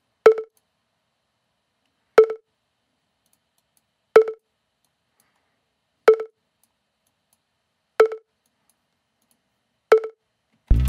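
A short pitched electronic percussion hit, a synth-pluck-style sample, played on its own and repeating about every two seconds, six hits in all.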